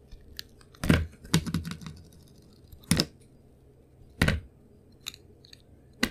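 A utility knife blade slicing thin pieces off a painted bar of soap: four sharp, crisp crunches about a second apart, the second breaking into a short crackle, with faint small clicks between.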